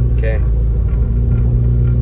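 Steady low drone of a car's engine and tyres on a wet road, heard from inside the cabin while driving. A brief vocal sound comes just after the start.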